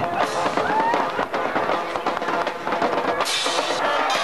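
A high school band playing with a clear drum beat, heard over nearby spectators' voices; the band grows louder and fuller about three seconds in.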